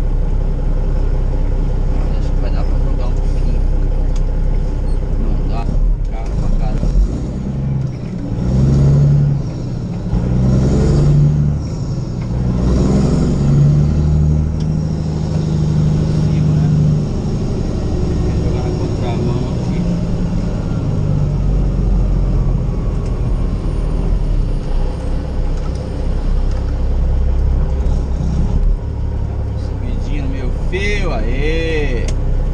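Semi truck's diesel engine heard from inside the cab while driving, a steady low rumble that pulls harder, its pitch rising and stepping, between about 8 and 17 seconds in.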